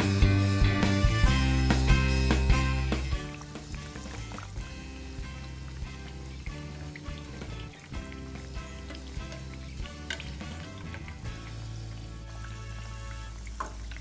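Background music, loud for the first three seconds and then dropping lower. Under it is the crackle of biscuits deep-frying in hot oil in a kadhai.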